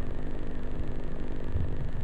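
Steady hiss with a faint low hum from an old tape recording, heard in a pause with no speech.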